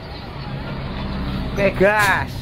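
Intercity bus diesel engine running with a steady low hum, growing slowly louder over the first second and a half as the driver gets ready to pull away.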